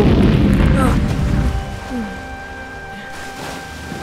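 Explosion sound effect: a loud, deep boom that rumbles and fades over about a second and a half, with background music under it.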